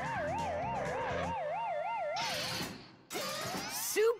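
Cartoon burglar-alarm siren going off: a wavering electronic tone that warbles rapidly up and down, about five times a second, for around two and a half seconds. It is followed by a couple of short noisy bursts near the end.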